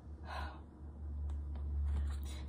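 A woman's short audible breath, lasting about a third of a second and starting a quarter second in, over a steady low hum.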